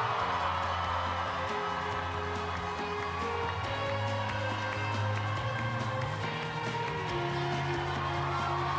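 Background music of sustained chords over a steady bass, the held notes shifting every couple of seconds.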